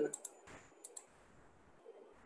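Faint computer clicks while an image is copied and pasted: a few short ones near the start and a pair about a second in.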